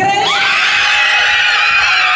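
A group of young girls screaming with excitement, many high-pitched voices overlapping and held, breaking out suddenly at the start.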